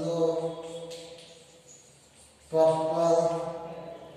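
Drawn-out chanting voices: two long phrases held on a near-steady pitch, the first at the start and the second about two and a half seconds in, each fading away.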